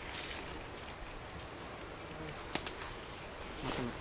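Quiet forest ambience, a low steady hiss with a single sharp click about two and a half seconds in.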